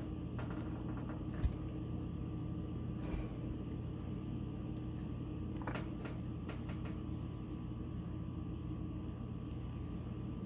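Steady low hum of room noise with a few soft knocks and scrapes, the sharpest about a second and a half in, as a metal cookie cutter is pressed into a slab of hardened soap and worked loose.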